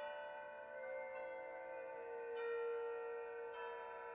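Wind ensemble music in a soft, sustained passage of ringing, bell-like tones. New notes enter roughly every second and ring on over one another.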